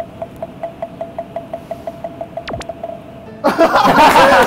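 Edited-in sound effect: a rapid train of short, identical pitched blips, about five a second, with a quick swooping glide near the end. About three and a half seconds in, loud music cuts in.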